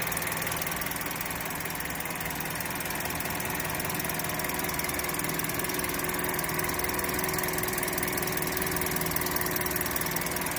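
Toyota Dual VVT-i petrol engine idling steadily, heard up close from the open engine bay.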